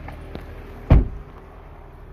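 A 2020 Ram 1500 Limited pickup's door shutting with a single heavy thump about a second in, after a couple of faint clicks.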